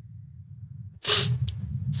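A person's short, sharp breath noise about a second in, then a small click, over a low steady hum.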